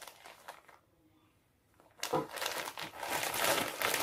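Clear plastic wig packaging crinkling as the wig is handled in its bag: faint rustling at first, a second of near silence, then steady crinkling from about halfway through.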